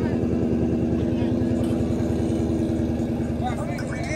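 A vehicle engine idling steadily, its low, even pulsing unchanged throughout, with voices starting up faintly near the end.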